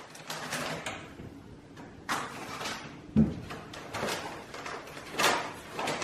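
A string of knocks, bumps and scuffling sounds, with the sharpest thump about three seconds in.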